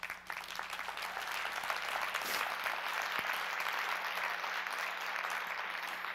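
An audience applauding steadily for several seconds, dying away near the end.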